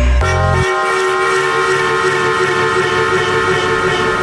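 Progressive house DJ mix going into a breakdown: the kick drum and bassline cut out about half a second in, leaving a sustained, horn-like synth chord held over the rest.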